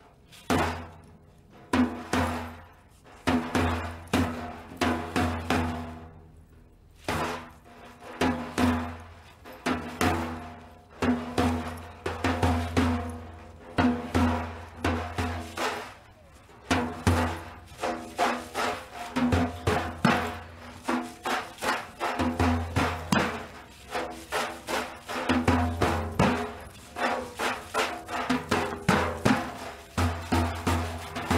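A large Persian frame drum (daf) played alone, deep booming strokes mixed with sharper ringing ones. It plays in short spaced phrases with pauses at first, then a faster, denser rhythm from about seven seconds in.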